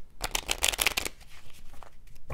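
Oracle cards being shuffled by hand: a quick run of rapid card flicks lasting about a second, then a few softer taps of the cards.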